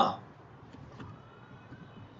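A man's voice trailing off, then quiet room tone with two faint clicks about a second in.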